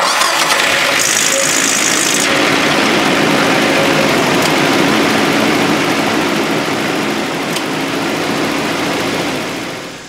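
A 1998 Nissan Frontier pickup's engine running steadily after being jump-started from a portable booster pack. The sound comes in suddenly and fades out near the end.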